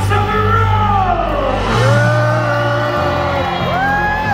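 Arena show music with a steady bass line, over which long drawn-out voices whoop and cheer: one falling call near the start, then a held note and a rising call near the end.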